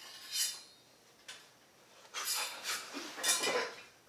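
A handful of short metallic scrapes and clinks, four or five strokes spread across a few seconds, from a metal object handled by hand.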